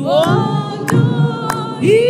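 Two women singing a gospel song together in two-part harmony, with sharp strikes keeping a beat behind the voices.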